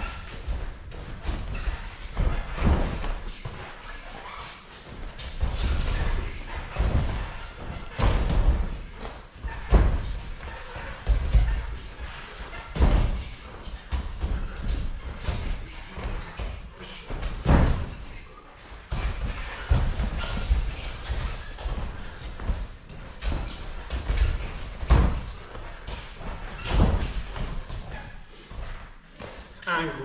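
A boxer's footwork on the canvas floor of a boxing ring during shadow boxing: irregular thuds about one every second or two, some much heavier than others.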